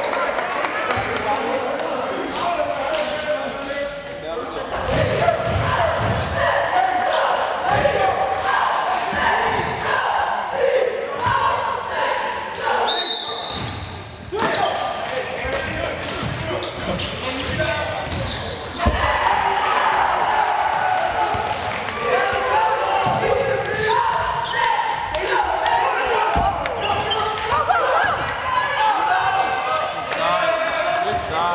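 Basketball being dribbled on a hardwood gym floor during play, with repeated short bounces among players' and spectators' voices echoing in a large gym. A brief high steady tone sounds about halfway through.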